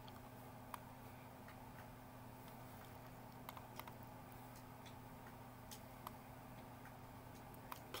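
Near silence: room tone with a low steady hum and a few faint, scattered clicks.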